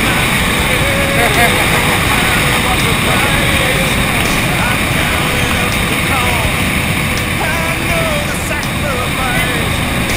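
Steady wind noise buffeting the camera microphone during a tandem parachute descent under an open canopy, with faint voices talking beneath it.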